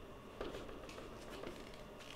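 A few faint, light clicks over quiet room tone: a pen tapping on a screen as a dashed line is drawn dash by dash.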